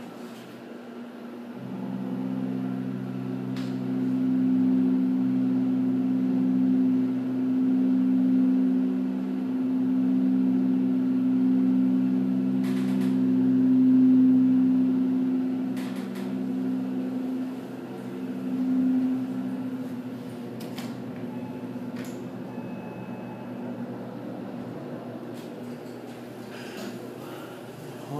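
A Mitsubishi hydraulic elevator moving, heard from inside the car: its hydraulic power unit gives a steady low hum that comes in about two seconds in, is loudest in the middle of the ride and fades out after about twenty seconds. A few faint clicks are heard along the way.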